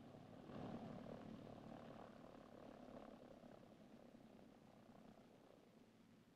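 Faint steady drone of a ski-equipped propeller plane's piston engines running on the snow. It swells slightly about half a second in, then slowly fades.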